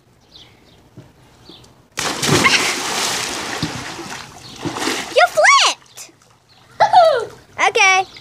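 A person jumping feet-first into a swimming pool: one loud splash about two seconds in, fading over the next couple of seconds as the water churns and settles.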